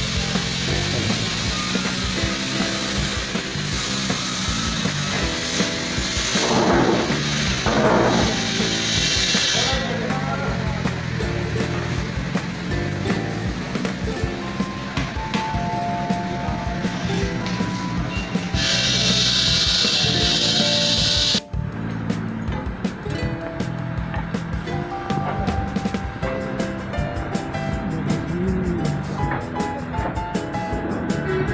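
Background music: a song with a steady low beat, held melody notes and occasional singing. It breaks off abruptly for a moment about two-thirds of the way through.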